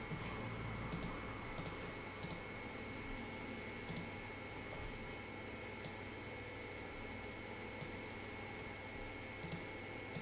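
Computer mouse button clicks, about nine sharp single clicks spaced irregularly, over a faint steady room hum.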